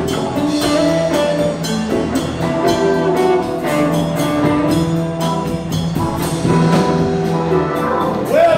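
Live rock band playing an instrumental passage: hollow-body electric guitar with electric bass and drums, sustained held notes over a steady beat.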